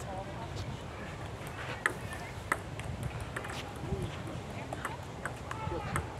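A table tennis ball tapping twice, a little over half a second apart, with a few fainter ticks, over outdoor background noise and faint voices.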